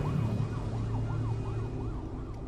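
Ambulance siren wailing in fast up-and-down sweeps, about three a second, fading as the ambulance drives away, over a low steady hum of traffic.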